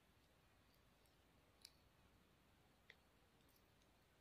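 Near silence, broken by two faint, sharp clicks, one about one and a half seconds in and another near three seconds.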